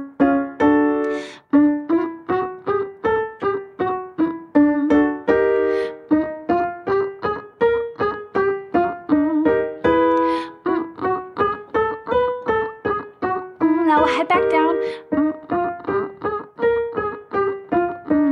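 Short staccato notes on a digital piano, about three a second, stepping up and down in small repeating patterns, with a woman humming short closed-mouth 'mm' notes along in a pitch-accuracy vocal exercise.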